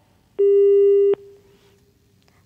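A single steady electronic beep, one unwavering pitch held for about three-quarters of a second, starting about half a second in and cutting off sharply, with a faint trace of the tone lingering after.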